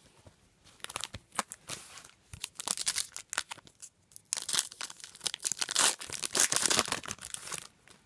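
Foil wrapper of a trading-card pack being torn open and crinkled by hand, in two bouts of crackling with a short pause in the middle.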